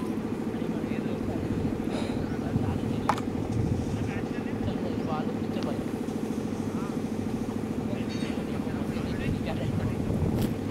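A steady low engine drone runs throughout, with faint voices calling across the ground and a single sharp knock about three seconds in.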